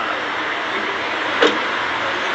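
Steady rushing outdoor background noise, with one short sharp click-like sound about one and a half seconds in.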